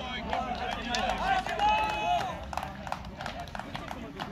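Men's voices shouting and calling out, with one long drawn-out shout near the middle, over scattered sharp clicks.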